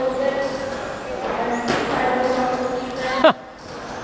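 Electric RC touring cars racing, their motors whining as several steady, overlapping tones. About three seconds in there is one short, loud sound that drops sharply in pitch.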